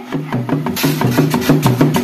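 Sundanese reak dogdog ensemble: wooden dogdog drums of several sizes and a large barrel drum beaten in a fast, even interlocking rhythm, with a cymbal struck along. The beat fades in and grows louder, and the cymbal becomes clear a little under a second in.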